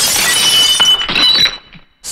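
Glass shattering: a sudden crash, then shards clinking and ringing that die away after about a second and a half.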